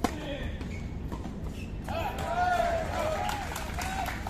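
A tennis ball struck once: a single sharp crack at the very start. A person's voice follows from about two seconds in.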